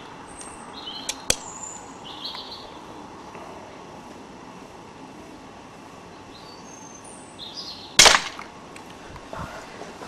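A single shot from an air pistol about eight seconds in: one short, sharp crack. Two small clicks come a little after the first second.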